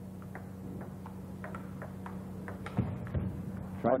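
Table tennis rally: the ball clicks quickly back and forth off the paddles and table, with a louder hit near the end, a smash that just misses. A steady low hum from the old broadcast tape runs underneath.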